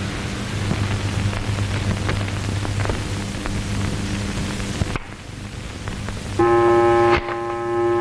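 Steady hiss with a low hum on an old film soundtrack, cutting off suddenly about five seconds in. A loud, sustained musical note with overtones comes in near the end, a dramatic music sting.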